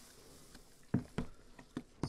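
Two-row malted barley pouring from a plastic bucket into a mash tun of hot water, a soft patter, with a few light knocks about a second in and near the end as the grain is stirred in.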